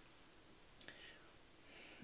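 Near silence: room tone, with faint breath noise.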